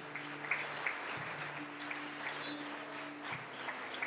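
Church congregation applauding, a spread of scattered claps, with soft sustained low musical notes underneath.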